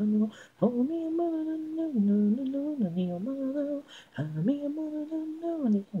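A solo female voice singing a melody in Japanese with no instruments: an isolated a cappella vocal track. It moves between held notes, with two brief breaks, about half a second in and about four seconds in.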